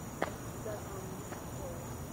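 Steady high chirring of night insects, with one sharp click about a quarter second in.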